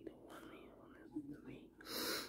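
A man whispering under his breath, faint and broken, with a short breathy hiss near the end.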